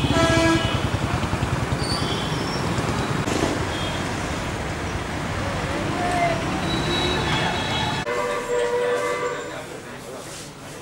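Road traffic noise with a vehicle horn sounding at the start and a few shorter horn toots later. About eight seconds in, the traffic noise drops away suddenly.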